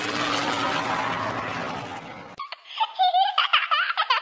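Cartoon propeller-plane fly-by sound effect, a loud whoosh that cuts off suddenly about two and a half seconds in. It is followed by quick, high-pitched squeaky chirps, like a sped-up cartoon giggle.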